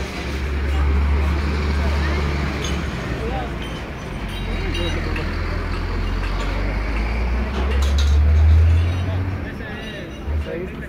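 A loud, steady low rumble with people talking in the background; the rumble swells briefly near the end.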